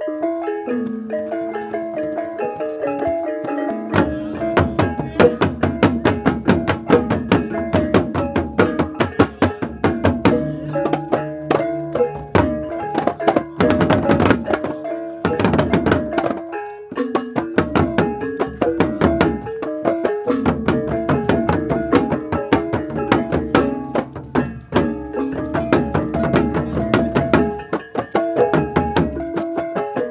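Balinese gamelan music: mallet-struck metal keys play a repeating melody, and drums and dense, fast percussion join about four seconds in.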